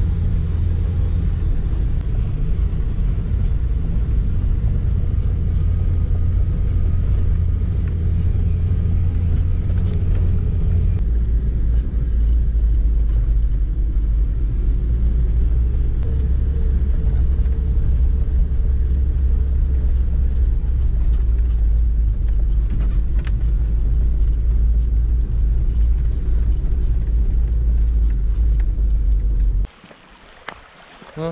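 Car cabin noise while driving slowly on a dirt road: a loud, steady low rumble of engine and tyres, which drops to a lower pitch about eleven seconds in. It cuts off suddenly just before the end.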